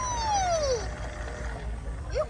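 Electronic sound effect from a LeapFrog Pick Up & Count Vacuum toy's speaker: a single falling tone that slides down over just under a second, then fades to quieter sounds.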